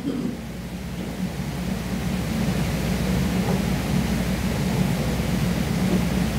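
Steady room noise: an even rushing hiss over a low hum and rumble, swelling over the first couple of seconds and then holding level.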